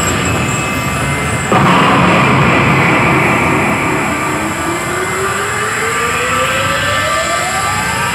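Grand Cross Legend coin-pusher machine playing a loud, dense sound effect through its speakers. It jumps louder about a second and a half in, then a single rising whine climbs over the last four seconds, building up to the Jackpot Chance.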